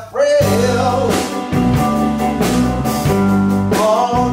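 A man singing into a handheld microphone over a live band with electric guitar; the music comes in a moment after a brief drop at the start, and the sung phrase ends shortly before the end.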